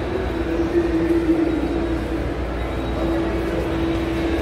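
Steady low rumble with a constant hum running through it: the background noise of a large indoor shopping mall, picked up by a phone carried while walking.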